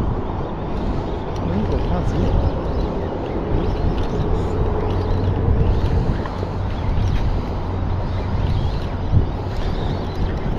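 A spinning reel being wound in against a hooked fish, under a steady rumbling outdoor background noise.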